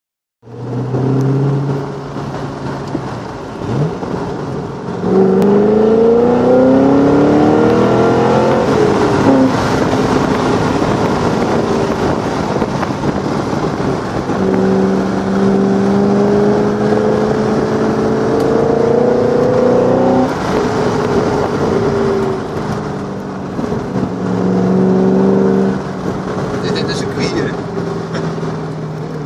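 Chevrolet Corvette C6 V8 heard from inside the cabin, accelerating with its engine pitch rising from about five seconds in, breaking off at a gear change near nine seconds, then climbing again more slowly in a higher gear until it drops away about twenty seconds in.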